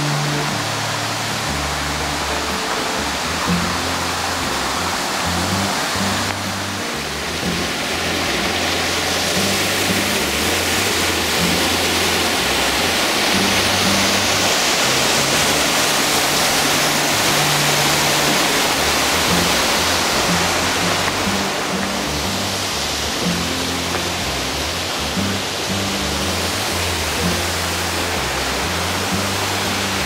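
Rushing water of a rocky mountain stream, swelling louder through the middle and easing again, under background music with slow low notes.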